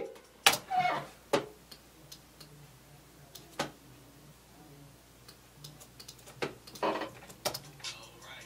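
Scattered sharp clicks and taps from a computer mouse and keyboard being worked at a recording desk, with a couple of brief vocal noises between them.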